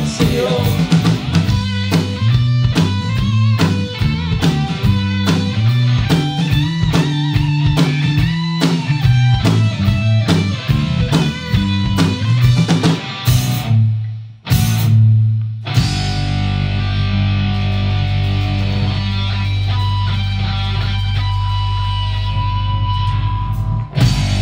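Rock band rehearsing with electric guitar, bass guitar and drum kit, playing an instrumental passage with a driving strummed rhythm. After a short break about two-thirds of the way in, the band hits a final chord and lets it ring out.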